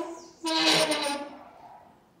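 A woman's voice: a short drawn-out, breathy vocal sound held on one pitch, fading away over about a second.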